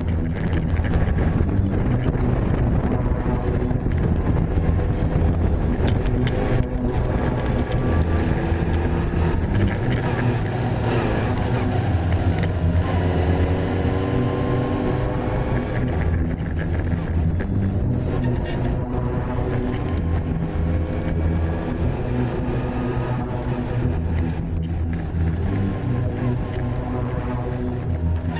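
Car engine pulling uphill, its pitch rising several times as it accelerates through the gears, heard under background music.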